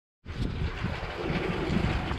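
Wind blowing on the microphone outdoors: a steady low noise that starts just after the beginning.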